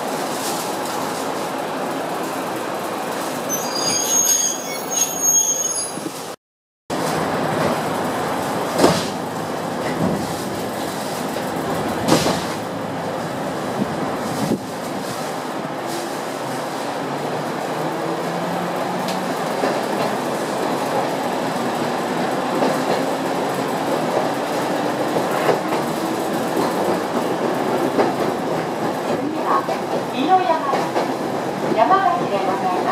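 Electric train car heard from inside while pulling out of a station: a steady running rumble with occasional sharp wheel clicks over rail joints and a faint motor whine that climbs in pitch as the train gathers speed. A brief high ringing comes about four seconds in, and the sound drops out for a moment soon after.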